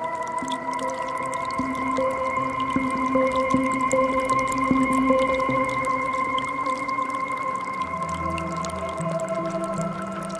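Slow ambient music: held synthesizer pad tones with a soft melody moving in slow steps and deeper notes coming in near the end. Underneath is the faint trickle of a forest creek.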